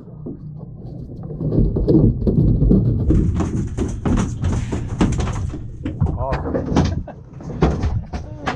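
A large mahi-mahi thrashing and thumping against the fiberglass deck and fish box as it is shoved into the in-deck fish hold, with repeated knocks over a steady low rumble and a short burst of voices about six seconds in.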